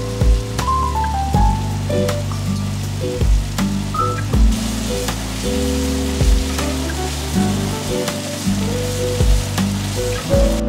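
Peppers, onions and chicken sizzling in a hot cast-iron skillet, the sizzle growing stronger about halfway through. Background music with a steady beat plays over it.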